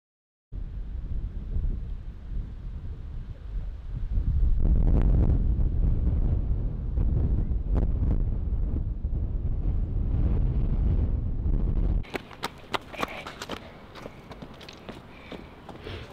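Wind buffeting the camera microphone as a low rumble, starting after a brief silence. About three-quarters of the way through the rumble drops away, and footsteps crunch and clack on loose river stones.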